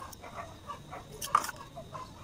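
Scattered short animal calls, with one sharp knock a little past halfway.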